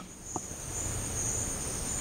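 Steady, high-pitched trilling of insects over a low background hiss.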